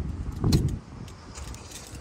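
A single dull thump about half a second in, over a low rumbling background.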